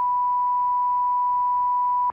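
Steady 1 kHz line-up reference tone, one pure pitch held at an even level, alternating with the spoken ident in a broadcast feed's pre-transmission loop.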